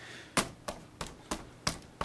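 A fist punching a large LEGO brick tree build six times, about three blows a second, each a sharp knock on the plastic bricks. The build is being tested for sturdiness and stays together under the blows.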